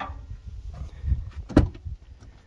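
The rear door of a Toyota Land Cruiser 80 series being unlatched and swung open: a soft thump about a second in, then one sharp metallic clunk, over a low rumble.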